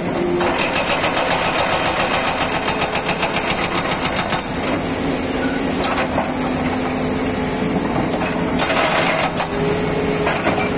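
Hydraulic breaker on a Doosan DX225LCA crawler excavator pounding a rubble pile in rapid, even blows, with the excavator's engine running underneath. The hammering runs steadily for about four seconds, eases off, then comes back in a short burst near the end.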